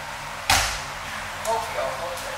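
A single sharp slap of a hand on the dojo mat as the pinned partner taps out, followed about a second later by a brief voice sound.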